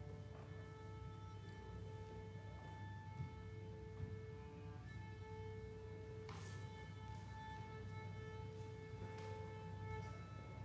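Quiet drone music: a cello bowing long held notes over a steady low drone. About six seconds in there is a brief rustle.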